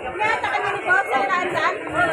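Several people talking at once: voices chattering among the market crowd.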